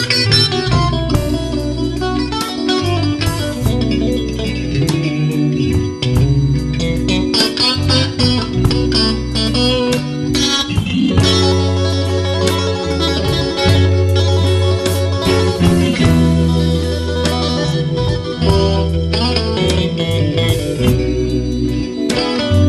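Live blues band playing an instrumental passage of a slow blues, with two electric guitars over a Hammond organ and drums.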